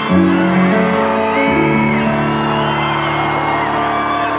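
Piano playing slow sustained chords, the chord changing about a second and a half in, over scattered screams and whoops from a large arena crowd.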